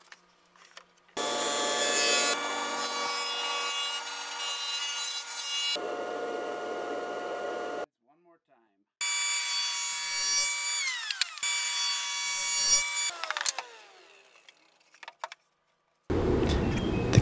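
Table saw with a dado blade stack running and cutting grooves in plywood, a steady whine over a rough cutting noise. It is heard in a few separate stretches that start and stop abruptly, and the whine falls in pitch as the blade winds down, a little past halfway and again near the end.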